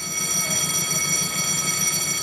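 Machinery at a canal lock as a ship moves through: a steady high-pitched whine made of several tones, over a low, rough churning rumble.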